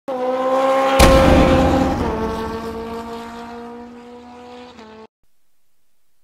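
Opening sound effect: a sustained pitched tone with a sharp hit about a second in, stepping down slightly in pitch twice as it fades, then cutting off abruptly about five seconds in.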